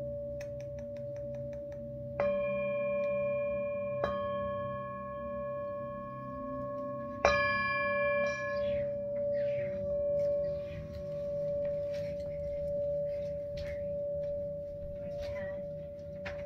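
Tibetan singing bowl played with a wooden mallet: a steady ringing hum throughout, struck three times (about two, four and seven seconds in), each strike adding bright overtones that fade over a second or two. A second, lower bowl tone joins about two-thirds of the way through.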